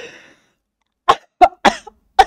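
A man coughing: four short, sharp coughs starting about a second in, after a breathy exhale at the very start.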